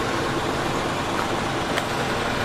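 Diesel engine of a crane truck running steadily.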